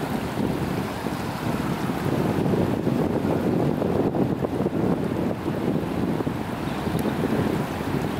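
Wind buffeting the microphone: a steady low rumble that flutters, with no clear tones.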